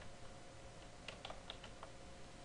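Computer keyboard typing: a run of faint, quick key clicks as a word is typed.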